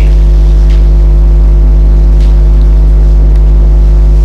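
Loud, steady electrical mains hum: a low buzz with a stack of overtones that does not change, picked up through the microphone and sound system.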